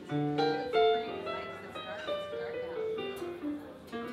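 Live band playing, with plucked guitar and keyboard notes moving through a melodic line over bass.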